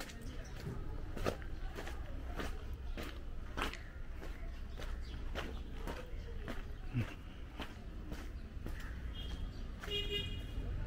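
Footsteps of a person walking on a wet dirt-and-gravel lane, about two steps a second, over a low background rumble. A brief high-pitched tone sounds near the end.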